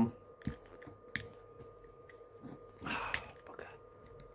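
Quiet handling noise: a few small sharp clicks and a soft rustle from hands moving the basket and ladder of a toy turntable ladder truck, over a faint steady hum.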